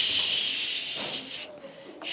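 A voice drawing out a long, hissing "shhh", the first sound of "she" stretched out so that a child can hear it. It fades out about one and a half seconds in.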